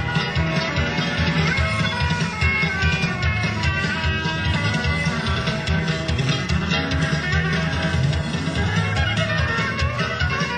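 A live country-rock band playing, with guitar prominent in a full, continuous mix.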